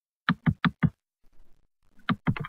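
Four quick keystrokes on a computer keyboard, sharp clicks about a fifth of a second apart.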